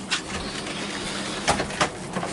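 A pleated concertina door in a caravan being slid along its track: a steady rustling slide, with a couple of sharp clicks near the end.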